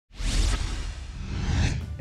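Television intro transition effect: a whoosh with a deep low rumble that comes in suddenly, swells twice and stops just before the host speaks.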